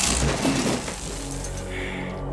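Film soundtrack: a crackling hiss of electric sparks that stops a moment in, giving way to a sustained low music drone of held tones.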